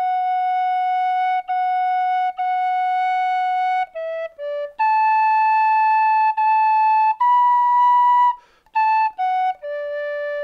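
Solo tin whistle playing a slow air, a single clear line of long held notes joined by short passing notes, the melody climbing to its highest held note before a brief breath about eight and a half seconds in.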